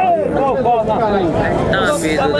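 Men's voices talking, more than one at a time, with crowd chatter behind.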